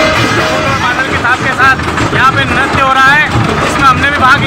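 Dhol and madal drumming music for about the first second, then a voice talking loudly over the fair noise.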